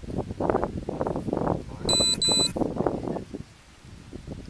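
Two short, high electronic beeps back to back about two seconds in, over low background talk.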